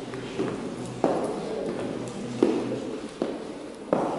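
A few uneven footsteps knocking on a wooden parquet floor, four sharp steps with a short echo after each.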